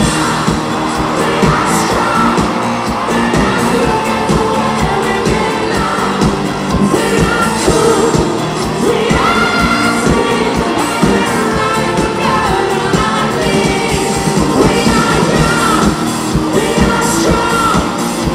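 Live pop band playing, with a male lead voice singing over drums and electric bass to a steady beat.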